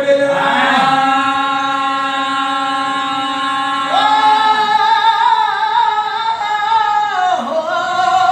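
A man singing a Telugu golla chaduvu folk narrative, unaccompanied. He holds one long note for about three seconds, then steps up to a higher note that he sustains for about three more before it drops away near the end.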